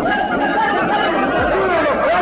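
Several people's voices talking and calling out over one another, loud and with no one voice clear.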